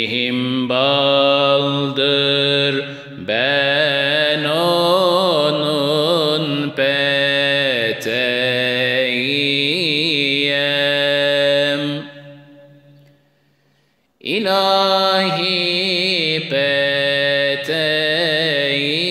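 A man sings an unaccompanied Turkish ilahi, a Sufi hymn, in makam Hüzzam, holding long notes with wavering melismatic ornaments. About twelve seconds in the singing fades away, and after a brief pause it starts again about two seconds later.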